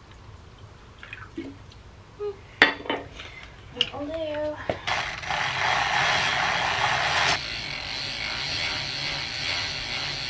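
Bicycle drivetrain being cleaned by hand: scattered clicks and knocks of the chain and chainring, then a loud hiss for about two and a half seconds that settles into a softer steady hiss.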